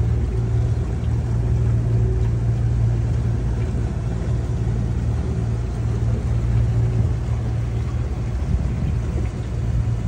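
A boat's engine running steadily in gear at moderate speed: a constant low rumble with a steady hiss over it.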